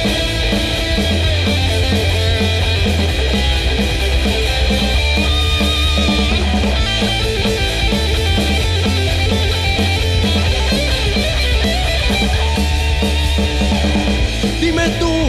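Instrumental break of a punk rock song: a rock band's electric guitar and drum kit playing steadily and loud, with no vocals.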